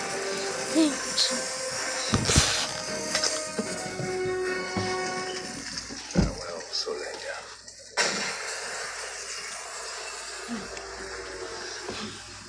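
A cartoon's soundtrack playing from a television, picked up in the room: music with voices, and two heavy thuds, about two and six seconds in.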